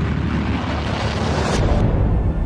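Sound effect of an animated logo intro: a loud, noisy whoosh with a deep rumble that builds and grows brighter, with a sudden sharp hit about one and a half seconds in.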